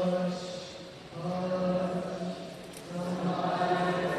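Voices singing a chant with long held notes, in three phrases broken by short pauses about a second in and near three seconds.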